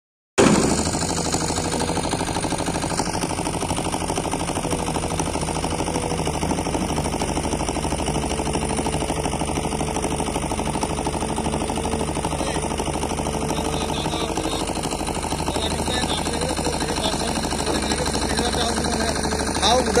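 XCMG XE215C tracked excavator's diesel engine running steadily under load as the machine digs soil and swings its bucket. A man's voice comes in near the end.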